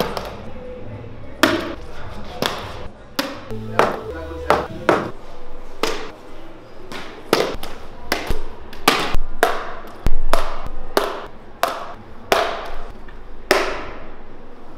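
A run of sharp knocks and slaps on a hard concrete floor, irregular at about one or two a second, from sneakers stamping and kicking and a small bottle hitting the floor; the loudest comes about ten seconds in.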